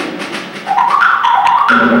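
Percussion ensemble playing, with marimbas and other mallet keyboard instruments. The music dips briefly about half a second in, then a rising run of struck notes begins.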